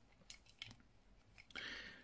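Faint clicks of a hard-plastic Transformers action figure's parts being moved by hand as its feet are folded out, with a short soft rustle near the end.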